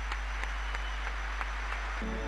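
Stadium crowd applauding: a steady wash of distant clapping with a few sharper claps standing out, over a low steady hum.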